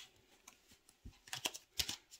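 Tarot cards being shuffled and handled: a few sharp clicks and snaps of card stock, one near the start and a quick cluster in the second half.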